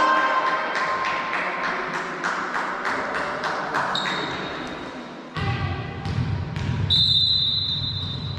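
Volleyballs bouncing on a hard gym floor, with voices echoing around a large hall. Near the end comes a short, high, steady referee's whistle.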